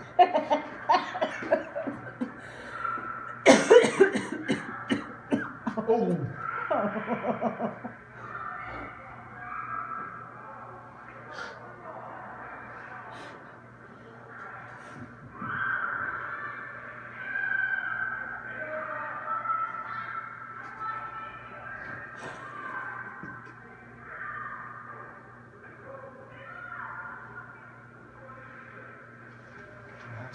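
Indistinct talking among people close by, loudest in the first eight seconds, with one sharp burst about three and a half seconds in, over a faint steady low hum.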